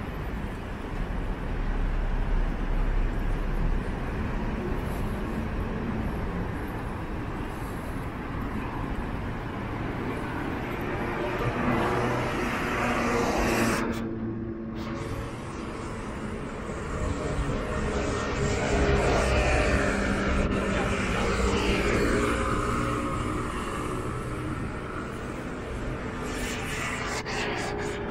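Road traffic on a busy city street: cars and motor scooters driving past in a steady rumble, with engine notes rising and falling in the second half.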